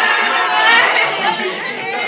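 Several women's voices talking over one another: lively group chatter in a room.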